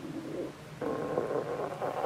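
A hungry stomach growling: a muffled, wavering gurgle that starts about a second in and keeps going.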